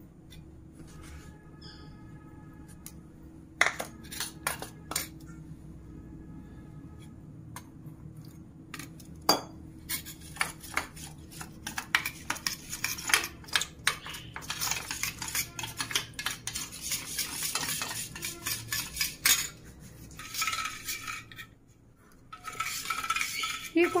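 Steel spoon clinking and scraping against a small stainless steel bowl as cornflour is spooned in and stirred with water into a slurry. Scattered clinks give way past the middle to a run of quick stirring strokes.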